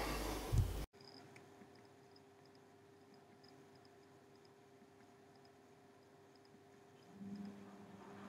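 Low room noise that cuts off suddenly about a second in, then near silence with a faint steady hum. A slightly louder faint hum comes in near the end.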